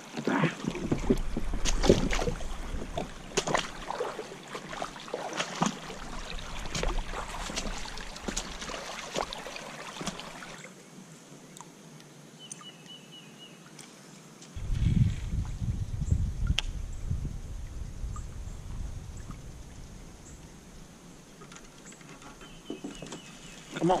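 Plastic fishing kayak's hull scraping and knocking over a shallow rocky creek bed, with water sloshing, for the first ten seconds or so. After that it is quieter, with gentle water sounds and a short low rumble about fifteen seconds in.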